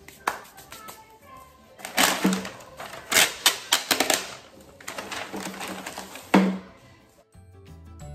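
Ribbon pieces being handled close to the microphone for a bow: loud rustling and crackling with quick clicks in two stretches, about two seconds in and again about five seconds in. Background music underneath, plainer near the end.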